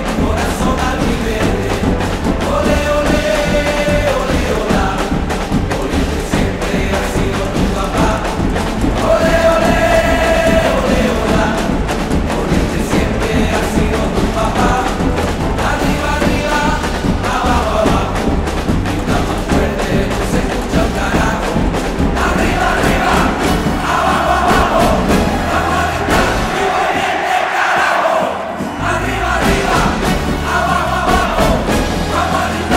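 Live band and marching drum corps playing a football-chant anthem, with a male lead singer and a stadium crowd chanting along over a steady driving drum beat. The drums and bass drop out for a moment near the end, then come back in.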